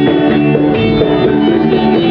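Live acoustic folk music led by an acoustic guitar, playing steadily and loudly in a short gap between sung lines.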